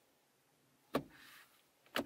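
Lada Vesta CVT gear selector lever being shifted by hand: two short sharp clicks about a second apart, the first followed by a faint brief hiss.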